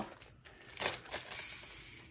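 Small plastic bag of square diamond-painting drills crinkling as it is handled and opened, with a short rustle a little before one second in.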